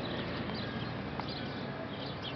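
Travys electric regional train moving slowly along the platform, with a low running hum and rhythmic clicking of its wheels on the track.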